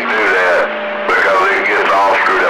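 Men's voices talking over CB radio on channel 28, heard through the receiver's speaker in a narrow, radio-limited band. A steady low tone runs under the speech, and the signal dips briefly about halfway through.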